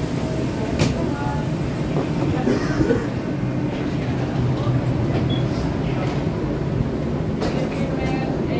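Passengers walking through an airport jet bridge: a steady low rumble and hum, with footsteps, the wheels of a rolling suitcase and faint voices.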